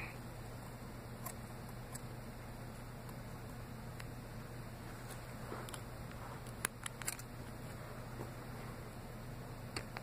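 Scissors snipping through a ribbed sock: a few faint, scattered snips, with a quick cluster about two-thirds of the way through, over a low steady hum.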